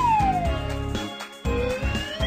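A cartoon whistle sound effect slides down in pitch for about a second, then starts sliding back up near the end, over children's background music with a steady beat.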